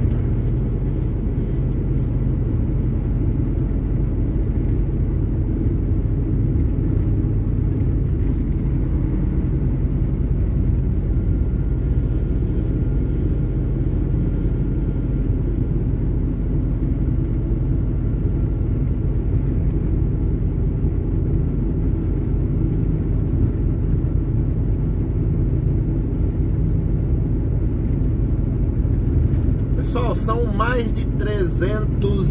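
Steady low rumble of a truck's engine and tyres, heard from inside the cab while cruising along a highway.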